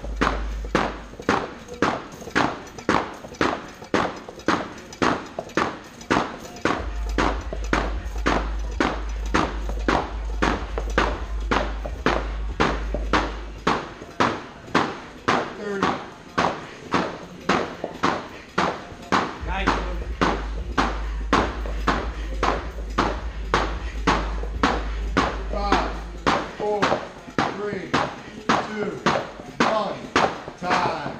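Heavy battle ropes slammed hard and fast onto gym floor mats in a steady rhythm of about two slams a second, during a 45-second all-out battle-rope interval.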